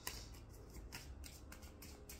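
Tarot cards being handled by hand, a string of faint, soft, crisp rustles and flicks as the cards slide against each other.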